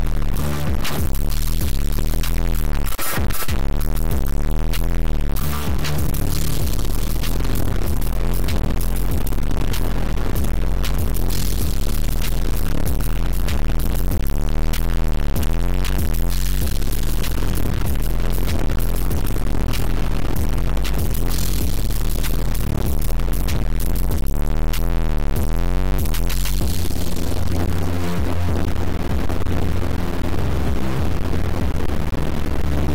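Playback of an experimental electronic piece made from layered dither noise run through Airwindows uLaw and DitherBox 16-bit truncation: loud, dense noise with repeated rising-and-falling sweeps over a heavy, shifting low end that thickens near the end.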